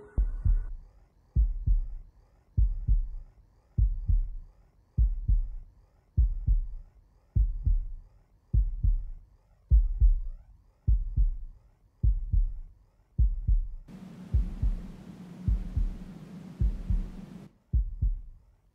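Opening of an electronic techno DJ set: a deep bass thump about once every 1.2 seconds, like a slow heartbeat. Near the end a hiss and a low steady hum join the pulse, then everything cuts out briefly.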